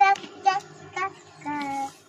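A young child's voice: short, high-pitched sing-song notes about two a second, then one longer, lower note near the end.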